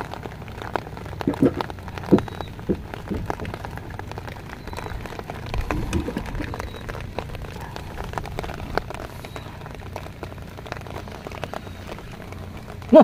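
Steady rain falling, with many small drop ticks throughout.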